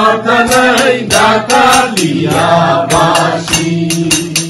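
Live unaccompanied singing of a song with hand-clapping keeping a steady beat of about three to four claps a second. A long note is held through the second half.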